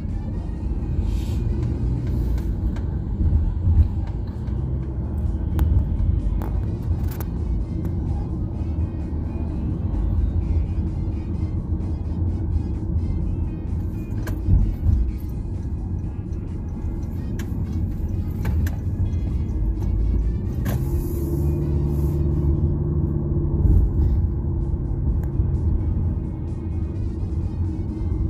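Low, steady rumble of a car's engine and tyres heard from inside the cabin while driving, with music playing faintly underneath.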